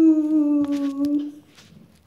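A young girl humming one long note with closed lips, the pitch sagging slightly, stopping about a second and a half in. Faint handling clicks follow as the phone is touched.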